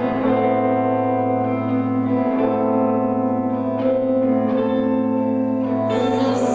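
Live band music led by an electric guitar played through effects and reverb: layered, sustained chords over a steady low drone.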